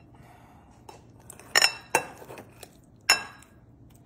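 Metal knife and fork clinking and scraping against a ceramic bowl while cutting food, with three sharp clinks: two close together about one and a half seconds in and another about three seconds in.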